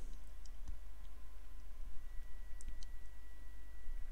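Quiet room tone with a steady low hum and a few faint, sparse clicks. A faint thin whine comes in about halfway through.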